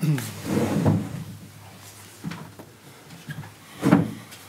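Knocks and handling noise from people settling at a press-conference table and fiddling with microphones and items on it: a sharp knock at the start and another just before the end, with quieter bumps between.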